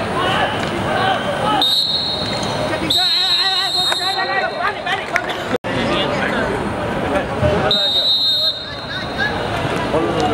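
Referee's whistle blown three times: a short blast, a longer one of over a second, then another short blast. The shrill steady whistle tone sounds over players shouting on the court.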